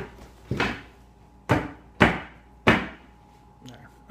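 A chair knocking and thudding as a person sits down on it: a series of sharp knocks spaced about half a second to a second apart over the first three seconds, the loudest about two seconds in.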